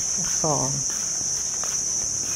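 Steady high-pitched chorus of insects, a shrill unbroken drone.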